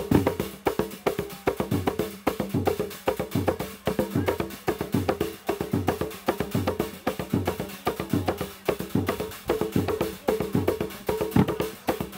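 A Zanzibari ngoma drum ensemble playing the Kiluwa dance rhythm: a fast, continuous pattern of deep drum strokes interlocking with higher, sharper strikes.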